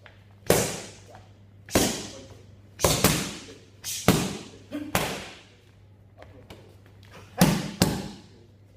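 Boxing gloves punching focus mitts: about ten sharp smacks in quick singles and doubles, with a pause of about two seconds before a final fast double near the end. Each smack echoes briefly.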